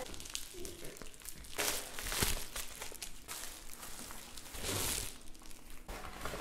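Bubble-padded mailer rustling and crinkling as it is opened and a flat board is pulled out of it, with two louder rustles, one about a second and a half in and one near the end.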